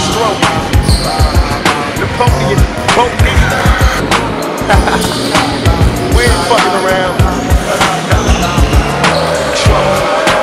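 A hip-hop beat plays over the sound of a basketball bouncing on a hardwood gym floor, with occasional sneaker squeaks.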